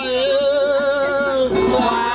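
Women singing a Vodou ceremonial song: one long held note with a wavering pitch, moving on to new notes about a second and a half in.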